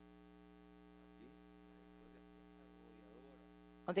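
Steady electrical mains hum on the audio feed: a low, constant buzz with higher overtones, faint under a very quiet background voice.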